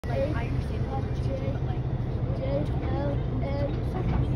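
Diesel switcher locomotive running with a steady low rumble, with people chatting over it.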